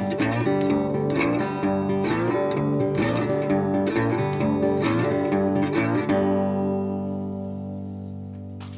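Resonator guitar playing the closing bars of a delta blues song, picked notes at about two a second. A final chord comes about six seconds in and is left to ring, fading slowly.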